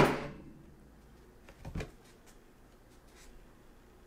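A bamboo penny board knocking against a tabletop as it is flipped and handled by hand, with one clear knock just under two seconds in and a couple of faint taps later.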